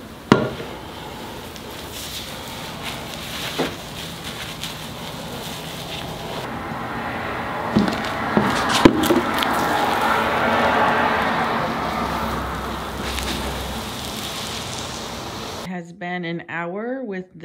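Cloth rag rubbing tung oil across a concrete countertop, a rough swishing that builds louder in the middle and eases off again, with a few sharp knocks, the loudest near the start and about nine seconds in.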